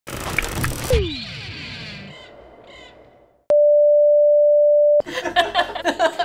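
Opening sound effects over a black screen: a loud hit with a falling swoop that rings away over about two and a half seconds, then a steady pure electronic beep lasting about a second and a half that cuts off suddenly.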